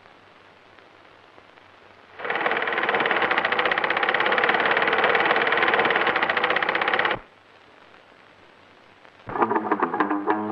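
Sewing machine running fast: a rapid, even clatter that starts about two seconds in, lasts about five seconds and cuts off sharply. Guitar music starts near the end.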